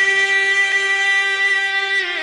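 Male voice holding one long, steady sung note in a Pashto noha chant, amplified through microphones; the chant moves on to a wavering new phrase right at the end.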